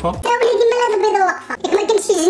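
A high-pitched voice, like a child's or a sped-up voice, making drawn-out sounds without clear words, its pitch wavering and sliding down.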